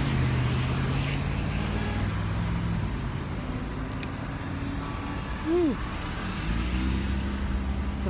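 Street traffic: motor vehicle engines running close by as a steady low hum, its pitch shifting as vehicles change. A brief rising-and-falling tone cuts in about five and a half seconds in.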